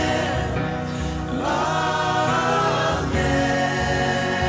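Mixed choir of men and women singing a worship song's "Amen, amen, amen" refrain, in long held notes that glide from one pitch to the next.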